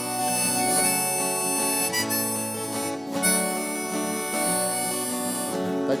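Harmonica playing long held notes over two acoustic guitars in an instrumental break of a folk song, with a change of note about three seconds in.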